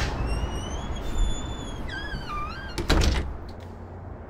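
A front door swinging shut: a click, its hinges squeaking in drawn-out, wavering tones, then the door closing with a heavy thud about three seconds in.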